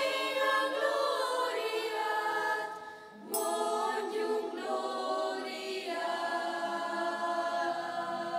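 Youth choir singing in parts, unaccompanied. The voices pause briefly around three seconds in, then come back in together with a single bright, high ringing strike of a triangle.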